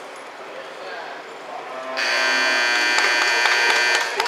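Arena buzzer sounding as one loud, steady, many-toned blare, starting about halfway through and cutting off sharply after about two seconds: the time signal that ends a cutting horse run.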